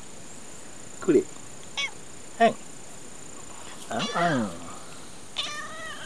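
Tortoiseshell cat meowing short "an" calls while rubbing against a person's legs and asking for attention: three brief calls, then two longer ones in the second half.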